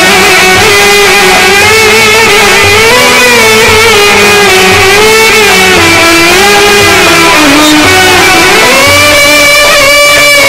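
Amplified live band music with no singing: a sustained, wavering melody line over a steady low beat. The melody steps up in pitch near the end.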